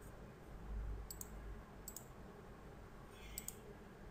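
Faint computer mouse clicks: three quick double-clicks spread across the few seconds, over a low steady hum.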